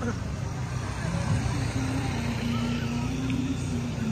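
Road traffic running steadily, with music playing over it: a held note that steps in pitch now and then.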